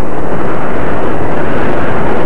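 Steady, loud motor, propeller and wind noise of a radio-controlled slow-flyer model plane in flight, picked up close by its onboard camera's microphone.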